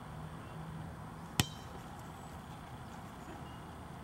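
A soccer ball kicked once: a single sharp, ringing smack about one and a half seconds in, over a steady low outdoor background.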